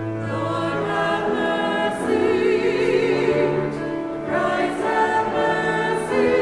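A small church choir singing slowly in long held chords, one high voice carrying a clear vibrato.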